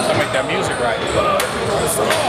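A man's voice talking, with a few sharp knocks in the busy gym around him, about one every half second to second.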